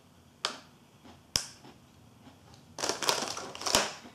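Plastic film wrapper of a Kinoko no Yama snack packet handled and torn open. Two sharp crackles come first, then about a second of dense crinkling near the end, finishing with a sharp snap.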